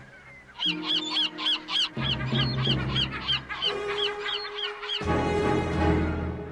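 A rapid run of short, evenly repeated gull calls, about three or four a second, over background music with long held notes. The calls stop about five seconds in, and the music swells.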